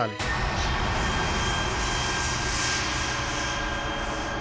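Dramatic TV-serial sound effect: a sudden deep rushing, rumbling swell that sets in just as the line ends, holds with faint high tones above it, and slowly fades.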